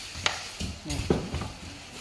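Plastic wrapping crinkling and rustling as hands handle a bagged keyboard in its box, with two sharp clicks: one about a quarter second in and one just after a second.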